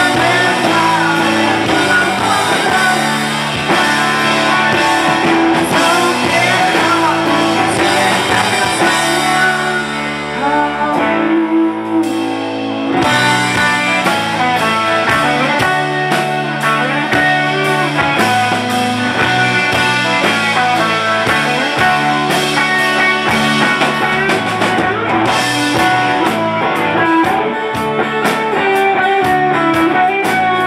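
Live rock band playing loudly, electric guitars and drum kit. About eleven seconds in the band drops to a held low note for a moment before the full band and drums come back in.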